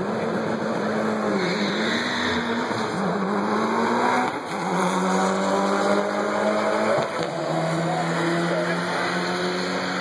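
Turbocharged Mitsubishi Evo launching off the drag-strip start line and accelerating hard down the track. The engine note climbs and drops back at each gear change, several times over the run.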